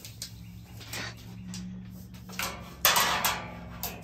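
Tape measure being pulled out and handled: short bursts of rattling and scraping from the metal tape blade, the loudest about three seconds in, over a steady low hum.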